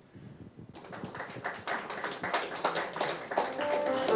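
Audience applauding, starting suddenly about a second in and growing louder, with a few piano notes coming in near the end.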